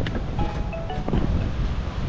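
Wind buffeting the microphone outdoors, a dense low rumble, with faint music and a few short tones over it.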